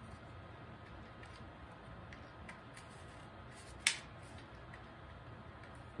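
Faint clicks from a BB gun's mechanism being fiddled with while working out how it loads and cocks, with one sharper, louder click about four seconds in.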